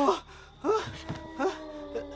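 A man moaning in fright from a film scene: two short, falling, whimpering cries about a second apart, over a held musical note.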